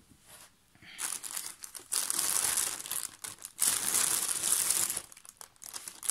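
Thin plastic mailer bag crinkling as hands handle and rummage inside it, starting about a second in and running for about four seconds.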